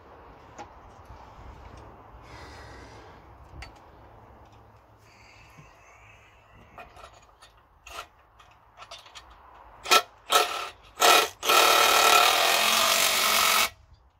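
Impact gun tightening a 10 mm bolt on the adapter plate that joins an electric motor to a gearbox: three short bursts about ten seconds in, then one long run of about two seconds. Before it come faint handling noises and small clicks as the bolt is started by hand.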